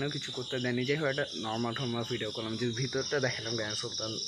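Crickets chirping in a steady, high-pitched trill under a young man's talking.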